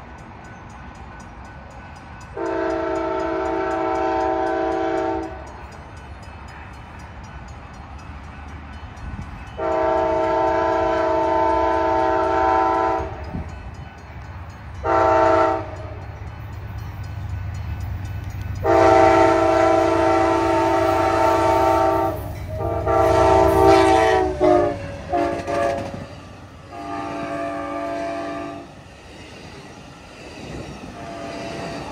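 Locomotive multi-chime air horn sounding the grade-crossing signal: two long blasts, a short one and a long one, then several broken blasts and one more shorter blast near the end. Underneath, the low rumble of the approaching train builds up in the second half.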